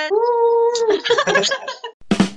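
A person's voice held on one long, slightly rising note for about the first second, then broken laughter, heard through a video call.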